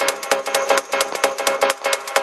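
Electronic techno music from a DJ mix: a fast, even run of sharp percussive clicks over a steady held note.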